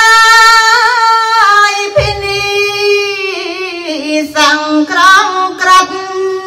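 A woman singing Khmer smot, a Buddhist devotional chant, solo into a microphone in long held notes that waver and bend slowly in pitch. A low thump sounds about two seconds in.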